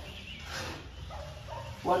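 A person's breathy exhale about half a second in, followed a moment later by a faint, short pitched sound.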